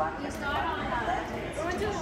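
Speech only: people talking in the background over a steady low hum.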